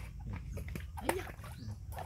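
Short cries from a baby monkey, the clearest about a second in.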